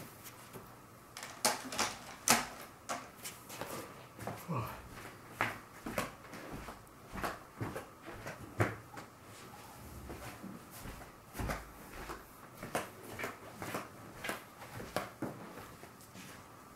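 Irregular light clicks, taps and knocks of small objects being handled on a tabletop, a few to several a second, with louder knocks about a second and a half in, about two seconds in and near the middle.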